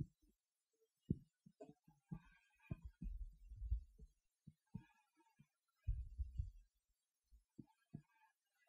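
Faint, irregular low thumps and rubbing as palms press and roll baguette dough against a floured marble counter, with two longer low rumbling stretches about three and six seconds in.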